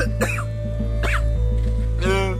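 A man sobbing in short, choked cries, near the start and again about a second in, over background music with a steady low bass.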